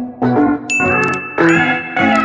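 Subscribe-button animation sound effect: a click and a bright bell ding that rings on, over background guitar music.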